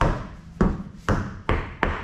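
A spare off-road tyre on a steel wheel bouncing on a concrete floor after being dropped: a string of thuds, about five in two seconds, coming closer and closer together as it settles.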